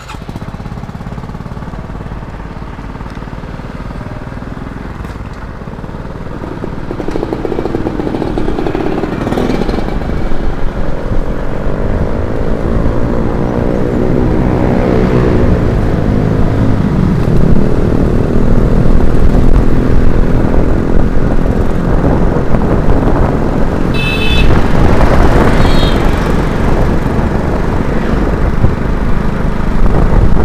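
Small motor scooter engine pulling away and speeding up, its pitch rising, then running steadily at road speed under a heavy wind rumble on the microphone. Two short high beeps come about three-quarters of the way through.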